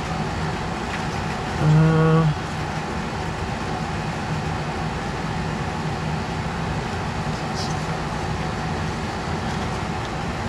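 Steady background hum with a constant low tone, of the kind an air conditioner or fan makes in a room. About two seconds in, a man gives a short hummed 'mm'.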